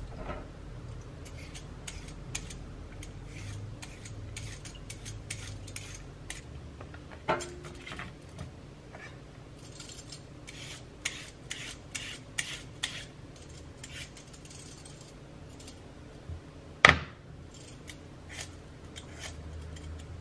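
A hand-held vegetable peeler scraping along celery, carrot and potato over a wooden cutting board, in a run of short irregular strokes. A sharp knock comes about seven seconds in, and a much louder one about seventeen seconds in, the loudest sound of all.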